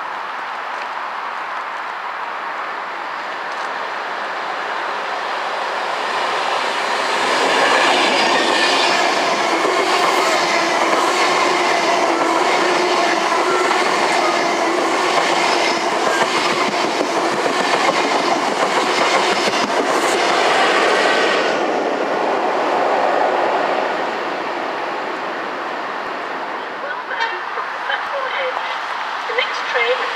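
Virgin Trains passenger train running through the station without stopping. The sound builds from about four seconds in and is loud for roughly fourteen seconds: a steady running hum with repeated clicks of the wheels. It then dies away after about twenty-one seconds, with a few scattered clicks near the end.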